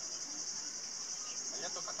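A steady, high-pitched chorus of cicadas, with quiet voices near the end.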